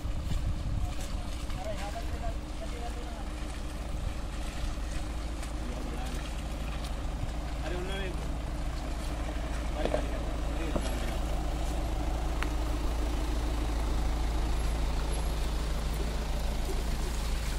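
SUV engines crawling slowly over a muddy, rocky track, a steady low rumble that grows a little louder as the lead SUV, a Kia Sorento, pulls close past.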